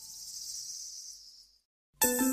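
Faint high hiss left over as the previous recorded song fades out, dying away after about a second and a half into a brief dead silence. The next song cuts in right at the end.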